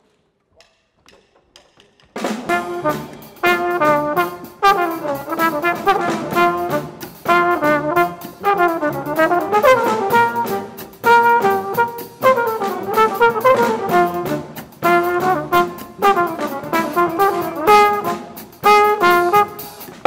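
Live jazz combo music led by a small coiled horn ("elephant horn"), with piano and double bass. It starts about two seconds in with repeated chords under the horn's melody.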